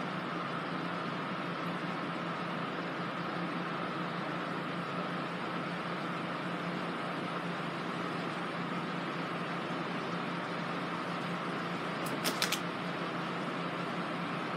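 Steady room hum and hiss with a constant low drone, with a quick cluster of light clicks about twelve seconds in.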